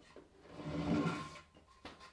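A wooden board being lifted off a wooden workbench: a soft scraping rustle lasting about a second, then a light click just before the end.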